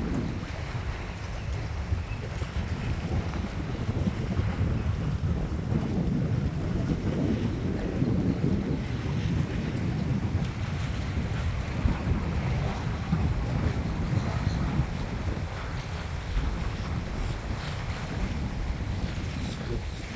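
Wind buffeting the microphone in a steady, low rumble, over choppy water slapping and washing below.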